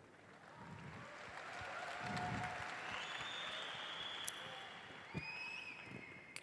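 Fairly faint audience applause that builds about half a second in, is fullest in the middle, and dies away near the end.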